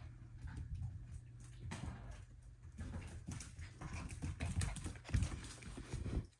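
Two F1b goldendoodle puppies playing rough: irregular scuffling, paw taps and claw clicks on a tile floor, with a few heavier thumps as they tumble, strongest near the end.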